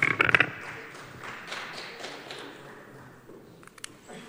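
A quick burst of sharp clicks and knocks at the start, then faint room noise in a large hall, with two light clicks near the end.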